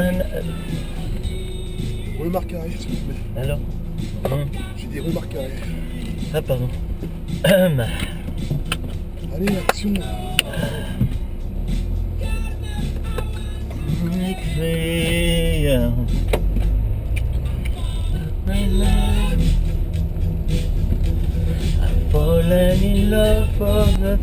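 Car cabin noise: a steady low engine and road rumble from the car being driven, growing louder from about halfway through. Short stretches of voice and music sound over it.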